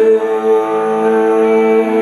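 Live worship-band music from keyboard and electric guitar, holding long, steady sustained notes in a chord.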